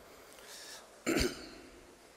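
A man clearing his throat once into a lectern microphone, a short sharp sound about a second in that dies away quickly.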